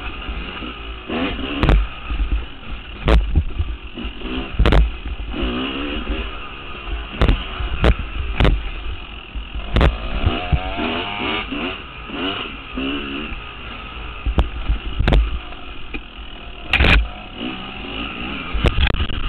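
Two-stroke Yamaha YZ dirt bike engine, recorded on board while riding a rough dirt trail, revving up and down several times. Repeated sharp knocks come as the bike jolts over the trail, over a constant low rumble.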